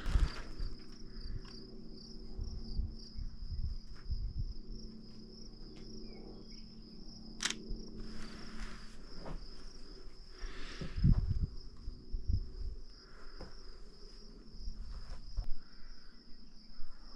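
A steady, high-pitched insect trill, slightly wavering, with scattered soft low thumps of handling and footsteps and one sharp click about halfway through.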